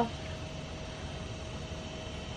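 Steady background hiss and hum with a faint steady whine, and no distinct event.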